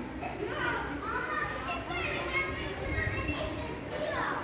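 Children's voices calling and chattering in the background, several high voices overlapping, with no clear words.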